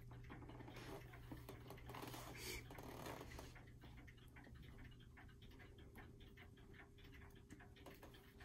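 Clock ticking faintly and steadily in a quiet room, over a low steady hum.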